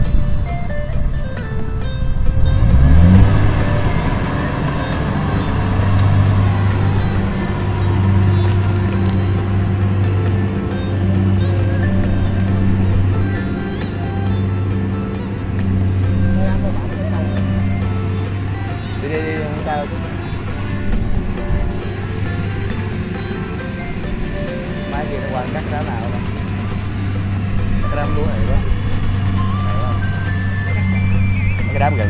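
Kubota combine harvester engine rising in pitch a few seconds in, then running steadily with a deep hum that swells and eases as it works. Music plays over it.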